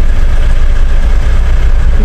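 Car idling in a traffic jam, heard from inside the cabin: a loud, steady low rumble.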